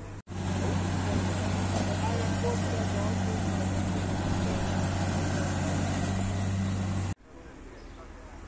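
Roadside traffic noise: a steady low engine hum under a wash of road noise, with faint voices. It starts abruptly just after the start and cuts off suddenly about a second before the end.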